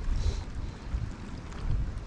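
Wind buffeting the microphone as a steady low rumble, over faint water sounds as a hand dips a salinity gauge into shallow lagoon water.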